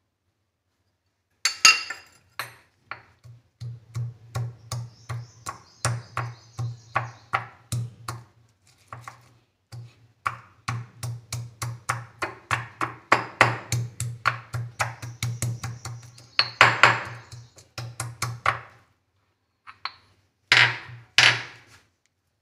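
Stone pestle pounding garlic cloves in a stone mortar: an even run of strokes, about two to three a second, each with a dull thud. There is a short break about halfway, and two louder strokes near the end.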